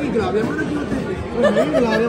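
Several people chattering and exclaiming over one another at a table. One voice draws out a long steady call near the end.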